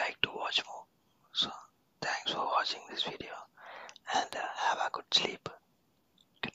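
Soft whispered speech close to the microphone, in short broken phrases, with a few sharp clicks between and among the words.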